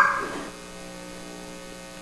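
A baby's rising squeal trails off in the first half second, leaving a steady electrical mains hum with several fixed tones.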